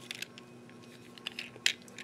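Hard plastic parts of a Transformers Combiner Wars Rook toy figure clicking lightly as it is handled and pegged into place. There are a few scattered clicks, the sharpest near the end, over a faint steady hum.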